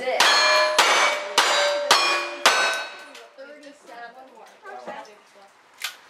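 Five single-action revolver shots about half a second apart, each answered at once by the ringing clang of a steel plate target being hit. The rings die away after the fifth shot.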